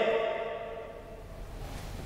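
Pause in a man's speech: the end of his voice fades out with a short room echo in the first half second, leaving quiet room tone with a faint low hum.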